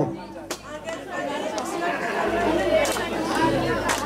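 A crowd of people chatting over one another, many voices at once with no single clear speaker. A low steady hum comes in about two seconds in.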